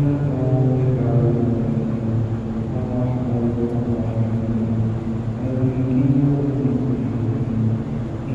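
A low male voice chanting in long held notes that step slowly up and down in pitch.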